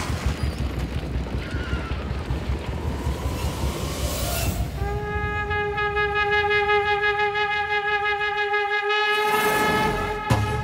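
Film soundtrack: a low rumble, then about halfway in a single held horn-like tone with several overtones for about four seconds, ending in a whoosh as music comes in.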